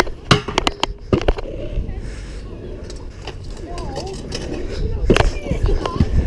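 Stunt scooter wheels rolling on skatepark concrete, with a few sharp clacks of the scooter against the ledge about a second in and another hard clack near the end.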